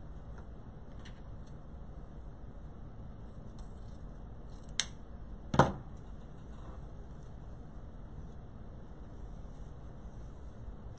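Two short clicks or knocks from handling craft supplies on a work table, about a second apart, the second louder and heavier, over a steady low background hum.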